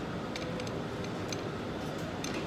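Steady low background din of a busy indoor bar, with a few faint clicks.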